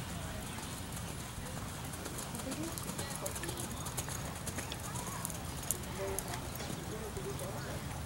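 Horse's hoofbeats as it canters on a sand arena, with indistinct voices talking in the background.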